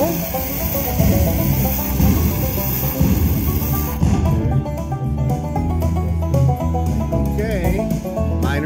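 Slot machine game audio: a fizzing dynamite-fuse hiss over low booms about once a second, cutting off about four seconds in as the dynamite symbols explode. Plucked-string, banjo-style game music follows.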